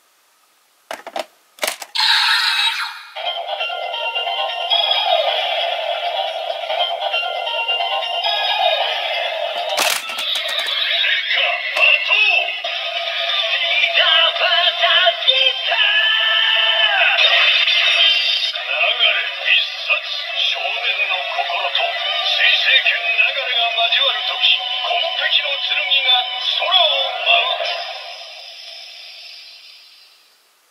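DX Seiken Swordriver toy belt playing its transformation sound effects: a few sharp plastic clicks as the Wonder Ride Book is set and worked, then electronic music and a recorded announcer voice from the toy's small built-in speaker, thin and lacking bass, fading out near the end.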